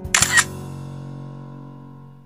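A camera-shutter click sound effect, a quick cluster of sharp clicks just after the start, over the last notes of a chime jingle ringing out and slowly fading.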